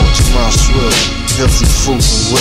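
Hip hop track: a rapped vocal over a bass-heavy beat with steady drum hits.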